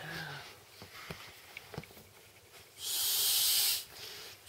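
A breath blown by mouth into an Intex vinyl air mat's valve: a loud hiss lasting about a second, near the end. Before it, a short voiced sound at the start and a few faint crinkles and ticks of the vinyl being handled.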